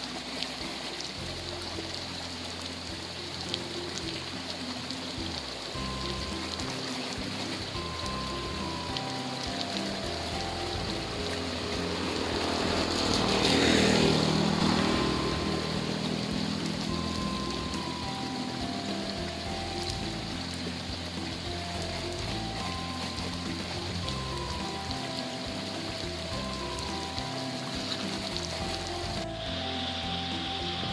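Water spraying in a steady hiss from a leaking plastic pipe as hands splash in it, under background music with a slow melody. A rush of sound swells and fades about halfway through, and the water hiss cuts off just before the end.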